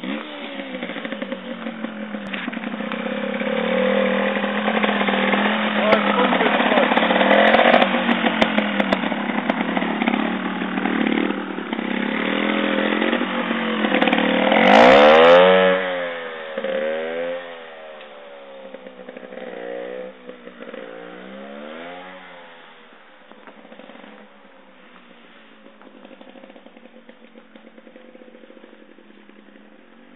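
1997 Gas Gas JTX 270 two-stroke trials bike engine revving up close, loudest about halfway through. It then turns quieter and more distant, with a string of short throttle blips as the bike rides away.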